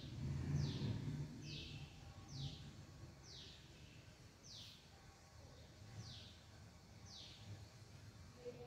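A bird in the background repeating a short, high chirp that slides downward, about once a second, with a faint low rumble early on.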